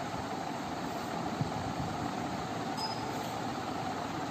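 Steady room noise: an even hiss with no distinct events, apart from one faint tick about a second and a half in.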